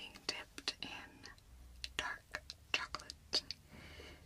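Soft, quiet whispering with many short, sharp clicks scattered through it, easing off into a lull in the middle.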